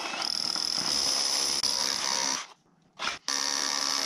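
Power drill boring through concrete and brick with a long 16-inch masonry bit, running steadily with a high whine. It stops about two and a half seconds in, gives a short burst, then runs again.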